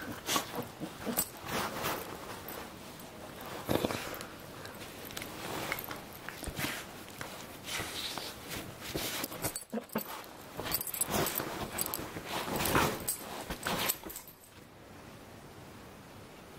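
An adult Labradoodle and a Labradoodle puppy play-wrestling on a bed: irregular dog play noises, mouthing and scuffling on the bedding, in uneven spurts that die down over the last second or so.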